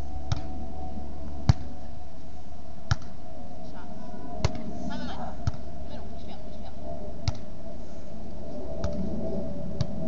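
A beach volleyball struck by players' hands and forearms during a rally: a sharp smack about every one to two seconds, eight in all, over a steady background hum.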